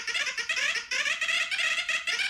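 A cartoon creature's very high-pitched, rapid gibberish chatter, a sped-up babbling voice that stands in for its line of dialogue.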